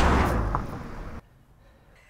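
Rushing noise of the car being braked to a sudden stop, fading over about a second and then cutting off suddenly.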